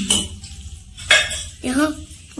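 Stainless steel dishes and utensils clinking as people eat, with one sharp, loud clink about a second in.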